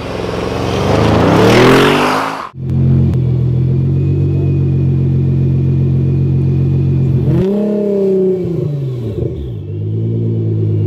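Audi RS6 Avant's twin-turbo V8 accelerating hard, rising in pitch and getting louder, cut off abruptly about two and a half seconds in. Then a stationary Nissan GT-R's twin-turbo V6 runs steadily, with one rev up and back down near the end.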